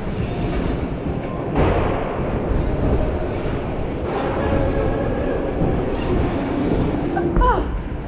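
Mountain bike tyres rolling over plywood skatepark ramps: a steady, loud rumble that rises about a second and a half in. Near the end comes a thud with a short cry.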